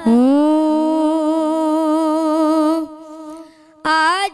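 A boy's solo voice reciting a naat unaccompanied, holding one long note with a slight waver for nearly three seconds. Then a short pause for breath before the next phrase begins near the end.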